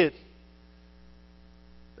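Faint, steady electrical mains hum with a ladder of overtones, left exposed in a pause between spoken sentences.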